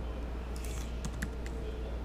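Computer keyboard typing: a few quick keystrokes clustered about half a second to a second and a half in, entering a price into a form field, over a steady low hum.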